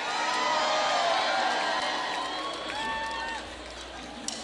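Large outdoor festival crowd cheering, with scattered individual yells over the mass of voices. It swells at the start and dies down gradually.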